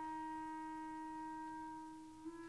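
A single soft wind-instrument note held steady in a quiet orchestral passage, fading slightly near the end.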